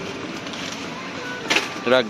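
Steady background noise of a supermarket aisle, with a short rustle of a plastic snack packet near the end as it is put into a plastic shopping basket.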